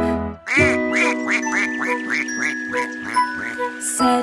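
Cartoon duck quacking: a quick run of about a dozen quacks, roughly four a second, over a held musical chord.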